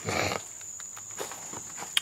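A man's short breathy laugh, then a steady high-pitched insect trill with a few faint rustles and ticks as the camera is moved.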